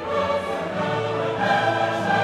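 Background music: orchestral music with choir voices, slow held chords changing every second or so.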